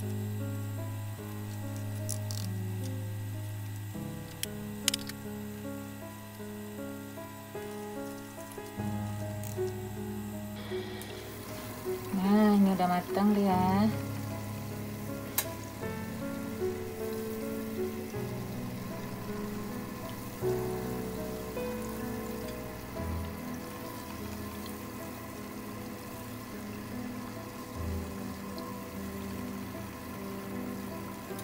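Background music plays throughout. About a third of the way in, hot oil starts a steady sizzle as breaded banana-cheese croquettes go into a deep-fry pot, and the sizzle keeps on to the end.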